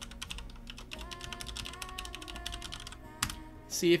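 Typing on a computer keyboard: a quick, steady run of key clicks.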